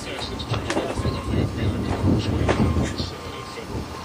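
Outdoor ambience: a steady low rumble with indistinct voices and scattered short knocks and clicks.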